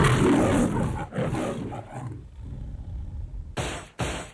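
The Metro-Goldwyn-Mayer logo's recorded lion roar: two roars in the first two seconds, the first the loudest, trailing off into a lower rumble. A brief burst of a different sound cuts in near the end.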